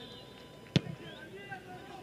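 Faint background of a football ground with distant voices, broken by one sharp knock just under a second in.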